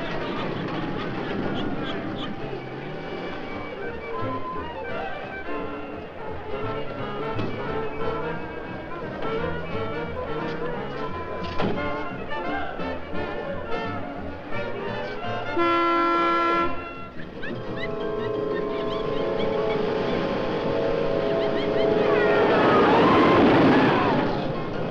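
Busy dramatic film-score music, broken about sixteen seconds in by a loud held horn note lasting about a second, then sustained chords that swell near the end.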